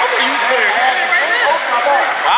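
Basketball being dribbled on a gym floor during play, a series of short thuds, with voices around it.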